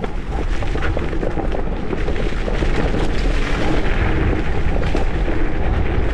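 Wind rumbling hard on the microphone of a moving electric scooter, over a steady rush of the MS Energy X10's tyres rolling across dry leaves on a dirt path.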